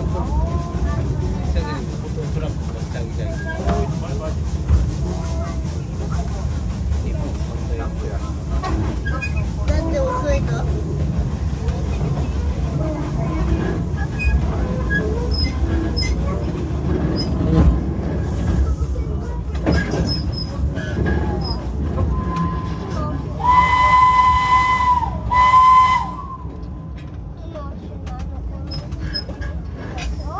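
Ride behind a small steam locomotive: a steady low rumble of wheels running on the rails with scattered short wheel squeals, then the locomotive's whistle sounds in two loud blasts near the end.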